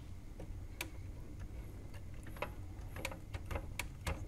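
Scattered sharp plastic clicks and ticks, about half a dozen and more of them in the second half, from a hand working the laser pickup mechanism of a Sony CDP-611 CD player to check that the laser sled is not stuck.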